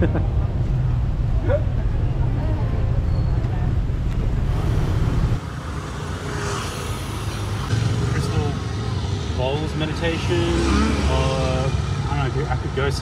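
Street sound with road traffic. A steady low rumble runs through the first half; after a change about five seconds in, people can be heard talking in the background over the traffic.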